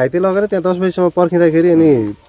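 A person speaking; only speech, in a language the recogniser did not catch.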